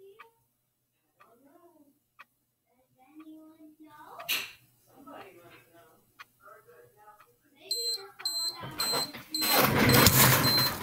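A classroom timer's electronic alarm beeping in about four short, high pulses near the end as it reaches zero. Loud rustling and knocking follow as the timer is picked up and handled.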